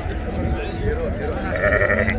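A sheep bleating once, about a second and a half in, over a background of men's voices.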